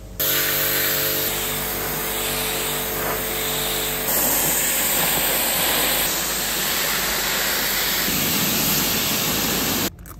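Pressure washer spraying water onto a car: a loud, steady hiss of the jet, with a steady pitched hum under it for the first four seconds. It starts and cuts off abruptly.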